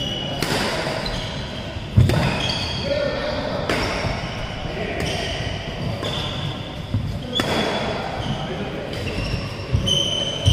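A badminton rally in an echoing hall: sharp racket strikes on the shuttlecock every second or so, about seven in all, with short high squeaks of shoes on the court floor between them.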